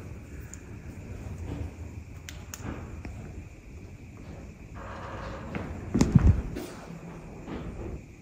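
A door banging shut somewhere off in the building, a single dull thud about six seconds in, with a few faint knocks before it.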